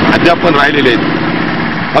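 A man speaking in Marathi close to the microphone, pausing in the second half, when a steady background hum is left.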